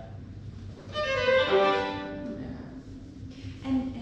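Solo violin playing a short phrase about a second in, its notes stepping downward before it fades.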